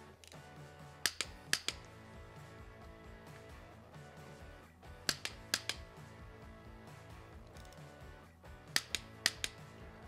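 Torque wrench clicking on the oil pump bolts of an S&S forged cam plate as each bolt is confirmed at 100 inch-pounds: three short groups of two or three sharp clicks, about one, five and nine seconds in. Quiet background music runs underneath.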